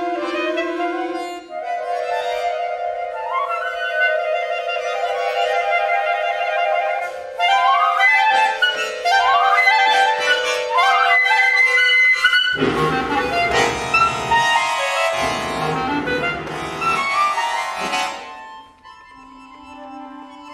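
A flute, clarinet and accordion trio playing chamber music. Long held woodwind notes and rising runs give way, about halfway through, to loud full chords lasting about five seconds, and then the music drops to a quiet held tone near the end.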